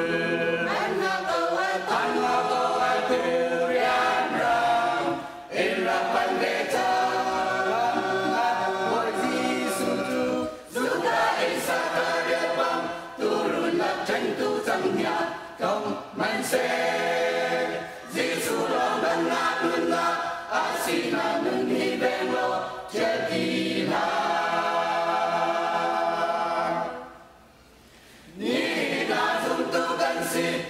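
Mixed choir of men's and women's voices singing in harmony, unaccompanied, in phrases with brief breaths between them. Near the end the singing stops for about a second and a half, then the next phrase begins.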